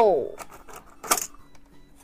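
A hard plastic transforming toy car is pulled free of its cardboard box insert, giving a few light plastic clicks and one louder, short crackling snap about a second in.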